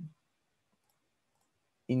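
Near silence on a gated video-call audio line: a short low voice sound at the start, then two faint high ticks in the middle.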